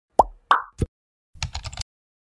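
Animated-intro sound effects: three quick pops, each dropping in pitch, then about a second later a rapid run of keyboard-typing clicks.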